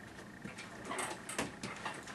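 Handling and movement noise as a player settles a banjo into position: a few irregular soft knocks and clicks, thickest in the second half, with rustling. No playing yet.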